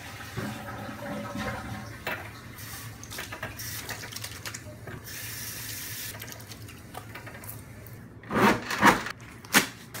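Water running from a faucet into a sink while hands are washed under it. Near the end come three loud rustling strokes as paper towels are pulled and rubbed to dry the hands.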